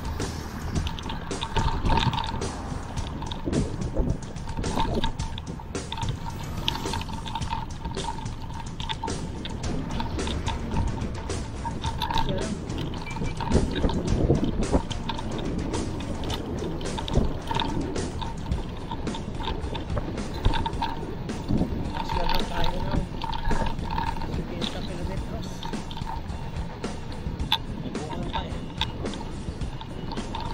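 Wind buffeting the microphone of a handlebar-mounted camera on a moving mountain bike, with frequent small clicks and rattles from the bike and mount over the road surface.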